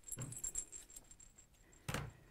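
Cotton quilt fabric being handled and turned over, a light rustling with small clinks, then one sharp click just before the end.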